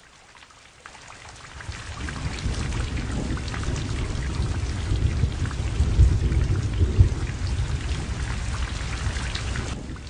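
Steady rain falling with low rumbles of thunder. The rain fades in over the first two seconds, and the rumbling swells around the middle.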